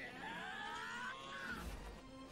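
A man's drawn-out battle cry from an anime film's soundtrack, heard faintly, rising slowly in pitch for about a second and a half before breaking off. A low rumble comes in near the end.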